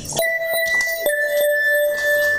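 Background music: one long held note, then a second slightly lower held note, with a few light taps over it.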